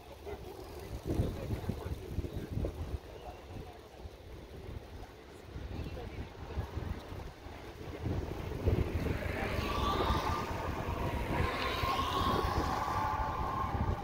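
Wind buffeting the microphone, with faint voices. A little over halfway in, a steady whine and a rising hiss come in and make it louder.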